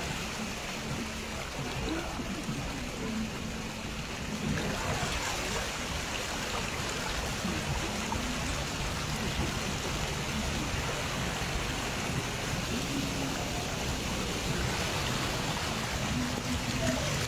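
Floodwater swishing steadily around a car's wheels as it drives slowly through a flooded street, with a faint low engine hum underneath.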